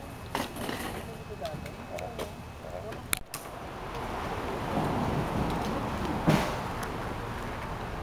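Indistinct chatter of people talking outdoors, then a rushing noise with a single sharp click about six seconds in.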